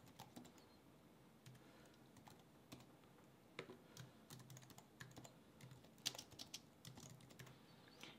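Faint, irregular keystrokes on a computer keyboard: short runs of typing separated by brief pauses.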